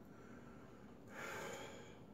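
A man's single audible, noisy breath, about a second in and lasting under a second, with otherwise quiet room tone.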